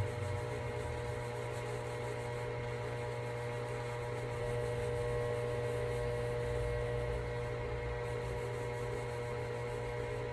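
A steady electrical hum made of several fixed tones, over low room rumble.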